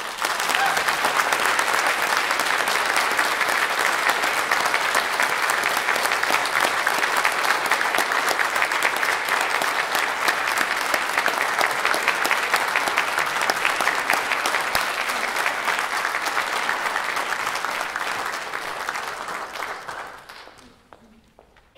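Audience applauding: steady, dense clapping that tapers off near the end.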